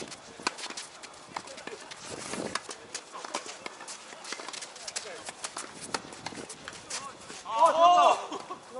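Tennis rally on a hard court: irregular sharp knocks of balls struck by rackets and bouncing, with players' footsteps. It ends in a loud shout from a player.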